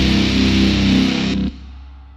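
The closing chord of a grindcore song: distorted electric guitar and bass held, then cut off sharply about a second and a half in, leaving a faint fading ring.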